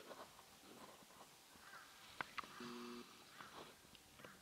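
Near silence: faint outdoor ambience, with two sharp clicks a little past halfway and a brief steady low tone just after them.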